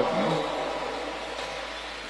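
Pause in a man's speech in a large church: the last word's reverberation dies away over about a second and a half, leaving a faint steady background hum.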